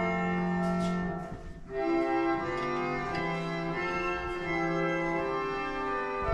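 Organ music playing: slow, sustained chords that change every second or so, briefly dropping away about a second and a half in.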